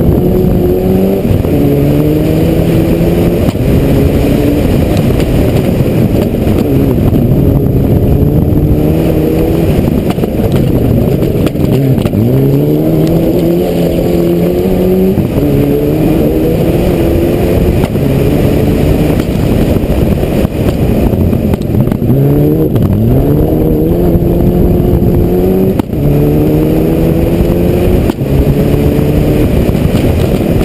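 Rally car engine running hard through the gears, its pitch climbing and dropping back at each shift, over and over. Twice, at about twelve and twenty-two seconds in, the pitch sinks low and then climbs again as the car slows and picks up speed.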